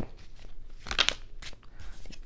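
A tarot deck being shuffled by hand: a few short papery rustles and taps of the cards, the sharpest about halfway through.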